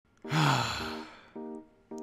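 A man's long breathy sigh, with a low voiced note that falls in pitch. Soft plucked guitar notes of background music begin about a second and a half in.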